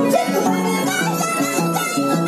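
Violin and Andean harp playing a lively huayno together: the violin carries the melody over the harp's plucked bass and chords.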